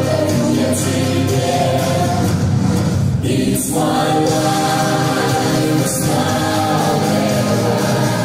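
Mixed vocal ensemble of men and women singing sustained harmony chords into microphones, with a short break about three and a half seconds in before the next held chord.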